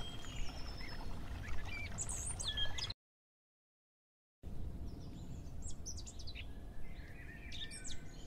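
Wild birds chirping and calling, many short chirps over a low, steady outdoor background noise. About three seconds in the sound cuts out completely for about a second and a half, then the birds chirp again, more faintly.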